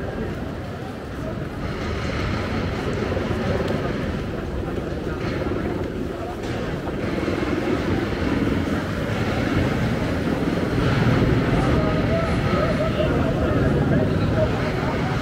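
Busy city street ambience: crowd chatter over steady traffic noise, with a low vehicle rumble growing louder in the second half.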